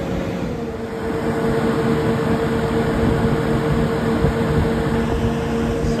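Belt-driven rooftop exhaust fan running with a steady hum over the rush of moving air. Its motor's adjustable sheave has been opened out so the fan spins slower and the motor draws less current.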